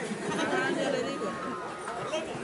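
Low chatter of a large crowd, with many voices overlapping.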